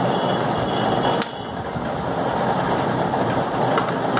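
Steady mechanical background noise, like a machine running nearby, with one sharp click about a second in.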